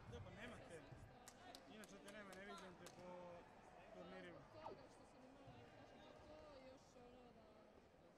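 Faint sports-hall background of distant voices echoing, with a handful of short sharp knocks between about one and three seconds in.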